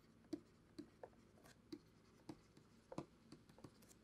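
Faint, irregular ticks and taps of a stylus on a tablet as words are hand-written in block capitals, about three or four strokes a second at most.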